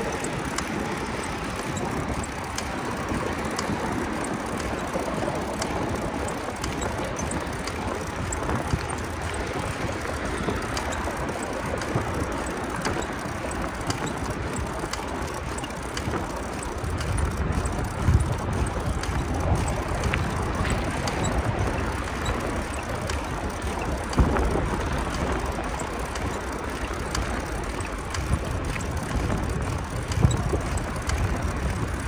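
Bicycle riding on a paved road, heard from a handlebar-mounted camera: a steady rush of tyre and air noise with many small clicks and rattles. A deeper rumble comes in a little past halfway, with a couple of louder knocks.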